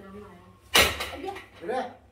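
People talking in a room, with one sudden sharp knock or bang about three-quarters of a second in, the loudest sound here.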